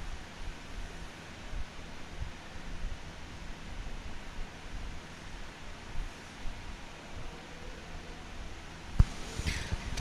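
Open-air field ambience on a broadcast microphone: a steady hiss with low wind rumble and a faint low hum. A single sharp click near the end.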